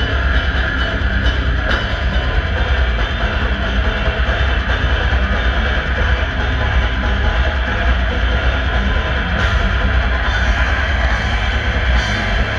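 Brutal death metal band playing live: distorted electric guitars and bass over a drum kit, a dense, unbroken wall of sound with a heavy, booming low end, heard from within the crowd.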